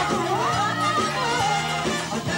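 Live rock band with a horn section playing, drums keeping a steady beat under a melodic line that slides up about half a second in and holds.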